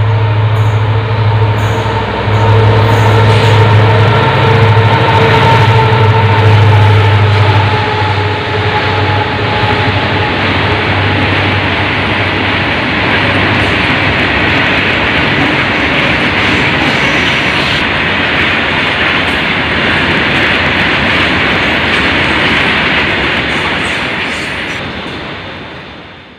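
Freight train of tarpaulin-covered wagons passing close by along the track, loud. A low steady hum dominates the first eight seconds, then comes the steady noise of wheels on the rails, dropping away near the end.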